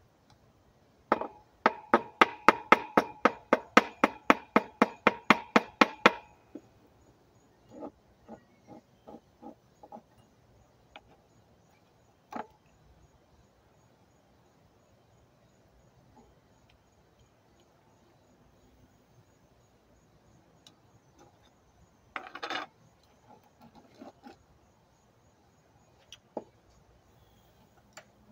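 Metal spoon tapping rapidly against a small glass jar, about four ringing clinks a second for some five seconds, then a few softer taps and a brief clatter of clinks near the end.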